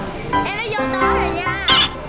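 Background music with a child's high-pitched warbling voice over it, ending in a brief sharp high sound.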